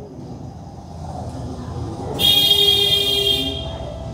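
A loud, shrill horn-like blast, about a second and a half long, starting about two seconds in over a quieter steady background.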